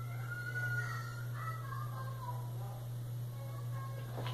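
Steady low electrical hum, with faint wavering high tones in the first two seconds.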